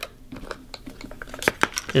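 Light plastic clicks and taps as a propeller is taken off a small electric motor's shaft and handled. There are a few sharp ticks, mostly in the second half.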